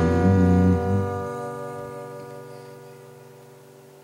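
Strummed acoustic guitar chord ringing out, restruck lightly just after the start and then fading slowly away.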